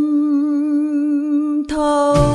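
A woman's voice holding one long sung note with a slight vibrato. Near the end the note changes and low accompaniment comes in.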